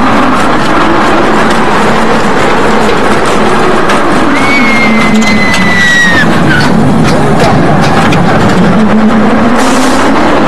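Roller coaster train running along its track heard from a rider's seat: a loud, steady rush of wind on the microphone over the rumble of the wheels. A long, high, slightly falling squeal comes in a little before halfway and lasts about two seconds.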